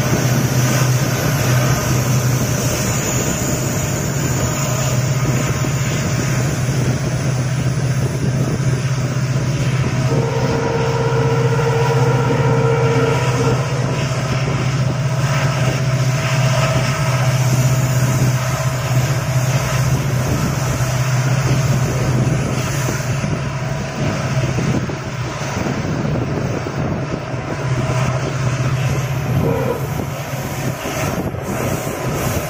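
Passenger train coach running at speed, heard from the open doorway: a steady low rumble of wheels on rails. A faint thin whine rises out of it for a few seconds about ten seconds in.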